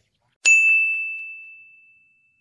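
A single bright ding, struck once about half a second in, that rings on one clear high note and fades out over about a second and a half. It is an edited chime sound effect marking the cut to the channel logo.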